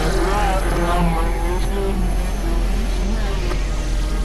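Dense layered experimental electronic noise music from synthesizers: a steady low drone under wavering, bending, voice-like tones and hiss, continuous throughout.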